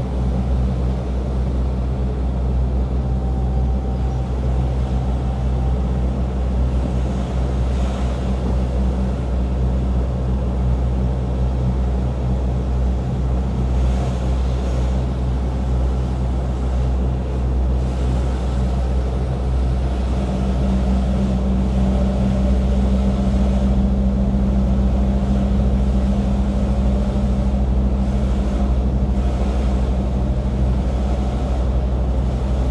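Mercedes Actros lorry's diesel engine running steadily at low road speed, heard from inside the cab as a low drone. The drone gets a little louder about two-thirds of the way through.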